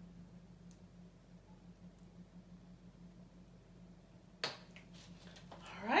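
Quiet room tone with a steady low hum and a few faint ticks, then a single sharp click about four and a half seconds in.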